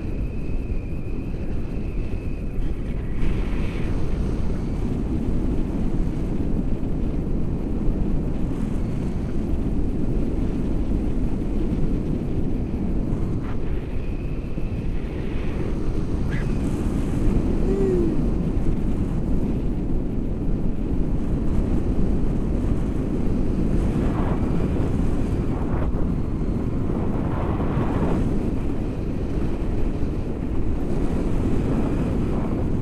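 Steady wind rushing over the camera's microphone during a tandem paraglider flight, a dense low rumble of airflow.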